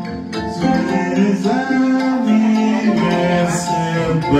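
Kora, the West African calabash harp-lute, played with a stream of plucked notes while a man sings over it.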